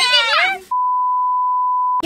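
Girls' high-pitched voices, cut off abruptly under a second in by a single steady pure-tone beep: the test tone of a TV colour-bar test pattern, dropped in as an edit.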